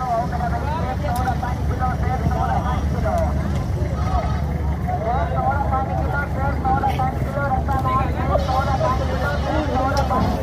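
Indistinct voices of people talking in the background over a steady low rumble, with no clear words.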